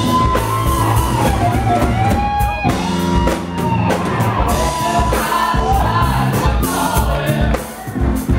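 Live rock band playing: a singer holding sung lines over electric guitars, bass guitar and drums.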